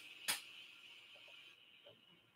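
Near silence: faint room tone with a single soft click about a third of a second in.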